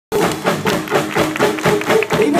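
Live rock-country band playing loud through a stage sound system: a steady beat of about four strokes a second under held notes.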